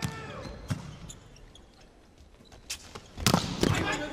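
A volleyball being struck by hand during a rally, heard as sharp smacks echoing in a sports hall. A few lighter hits are spread through the first part, and two loud smacks come close together near the end.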